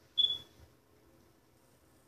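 A single short, high-pitched squeak about a quarter-second in, over faint room tone.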